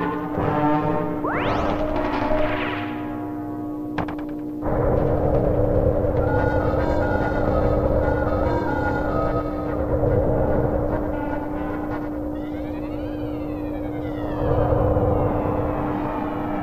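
Cartoon orchestral score with timpani and brass. From about four and a half seconds in, a loud rumbling roar of a cartoon rocket blasting off joins the music. Near the end a wavering whistle glides up and down.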